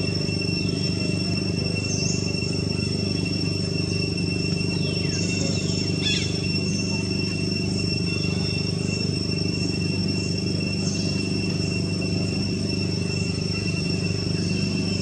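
Steady outdoor ambience: a continuous low hum under a constant high insect drone, with a few short bird chirps about two, five to six, nine and eleven seconds in.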